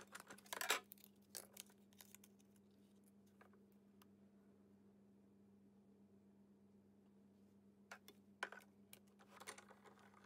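Near silence with a faint steady hum, broken by a few light plastic clicks and knocks in the first second or two and again near the end as the clear cutting plates of a Big Shot die-cutting machine are handled and set in place.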